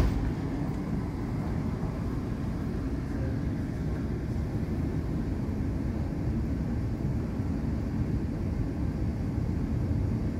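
Steady low rumble of airport terminal background noise, with a brief knock at the very start.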